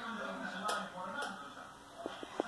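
Indistinct voices talking quietly, with two light clicks half a second apart a little under a second in.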